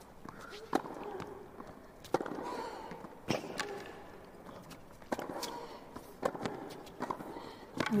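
Tennis rally on a hard court: a ball struck back and forth by racquets, a sharp pop about every one to one and a half seconds, about six strokes in all.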